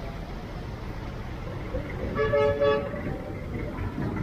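A vehicle horn sounds two short honks in quick succession about two seconds in, over a steady low rumble of street traffic.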